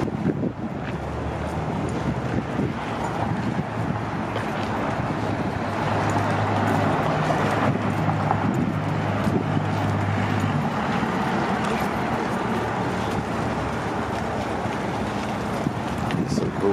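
Outdoor city ambience: steady traffic noise, with a low steady hum that stops about eleven seconds in.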